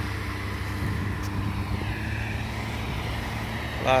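An engine running steadily with a low, even drone, the speaker's "berrando" (bellowing), over a haze of surf and wind noise.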